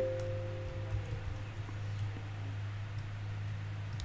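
A steady low hum. A held humming tone rises in at the start and fades out within about a second and a half, and a few faint clicks sound about a second in.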